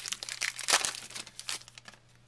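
Baseball card pack wrapper crinkling as it is torn open and peeled back from the cards, a run of crackles loudest just under a second in and thinning out near the end.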